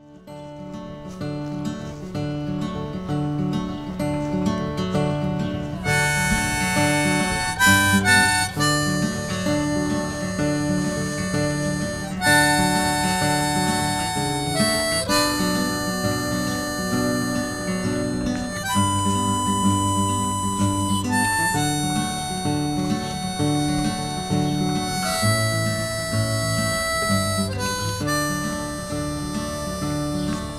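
Acoustic guitar strummed steadily, with a harmonica held in a neck rack playing long held melody notes over it. The guitar starts alone, and the harmonica comes in about six seconds in.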